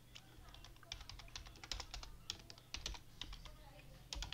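Faint typing on a computer keyboard: quick, irregular keystrokes in uneven runs.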